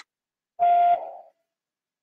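A single short electronic beep: one steady mid-pitched tone, under half a second long, that trails off quickly.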